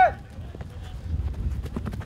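Footballers running and playing the ball on a grass pitch: scattered soft thuds of feet and ball over a low steady rumble.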